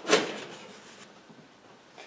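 A short scrape of the oven door's metal parts being handled, fading within half a second, then faint handling sounds while a screw is started by hand.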